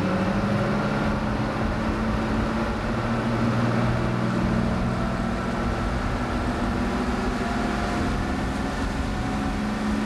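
Boat engine running steadily, a continuous low drone heard on board while under way.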